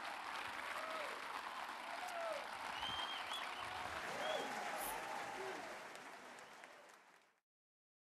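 An audience clapping, with a few voices calling out over the applause, fading out near the end and then cutting to silence.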